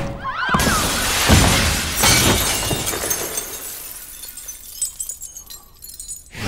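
Glass basketball backboard shattering, its shards raining down and tinkling on the gym floor, thinning out over a few seconds.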